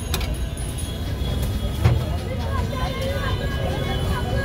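Busy street ambience: a steady low rumble of road traffic under background chatter of voices, with one sharp knock about two seconds in.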